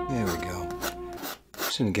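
The end of a jazzy saxophone theme tune, sliding down in pitch and fading out about a second in, with a raspy scraping sound mixed in; a man's voice starts near the end.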